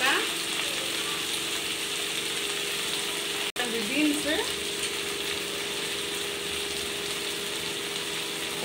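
Chopped vegetables frying in oil in a kadai: a steady sizzle, with a steady low hum beneath it. The sound drops out for an instant partway through.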